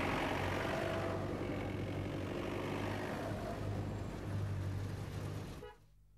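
Road traffic noise, with motor vehicle engines running as a steady low hum. It stops abruptly just before the end.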